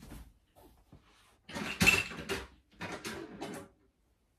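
Off-camera rummaging: a few faint clicks, then two bursts of knocks, clatter and rustling, loudest about two seconds in, as perfume bottles and their packaging are gathered up.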